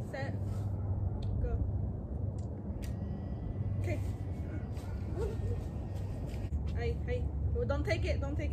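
Steady low outdoor rumble, with faint voices now and then and a single sharp click about three seconds in.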